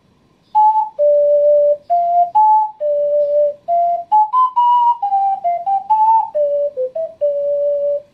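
Ocarina playing a short melody of clear, pure-toned notes, starting about half a second in, each note separated from the next by a brief break.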